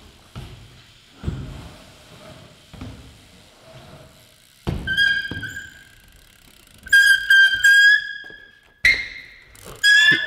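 BMX bike tyres landing and rolling on wooden ramps, with several dull thumps. From about five seconds in a loud, high-pitched buzzing whine cuts in and out, the noise of a broken rear hub.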